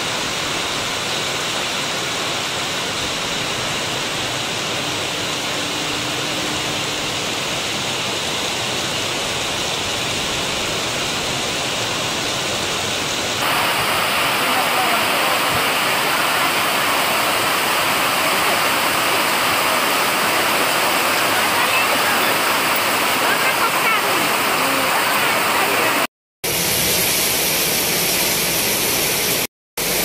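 Heavy rain pouring down in a steady hiss. It gets louder about halfway through and cuts out briefly twice near the end.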